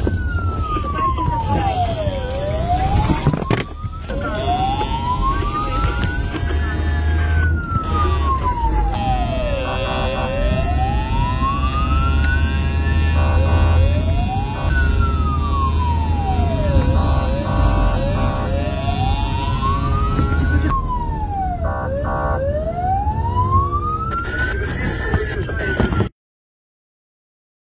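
Police car siren on a slow wail, its pitch repeatedly rising and falling, with a few short blasts of a second tone between the sweeps, over the patrol car's engine and road rumble.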